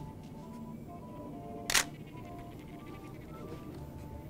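Single DSLR shutter release: one sharp click a little under two seconds in, over soft background music.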